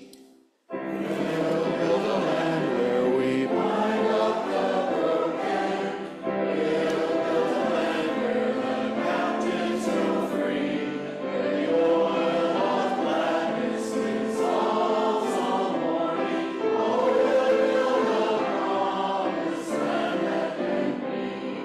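A congregation singing a hymn together. The sound cuts out briefly under a second in, then the singing carries on steadily.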